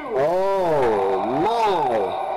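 A man's long drawn-out wavering cry or howl, its pitch falling, rising and falling again over nearly two seconds.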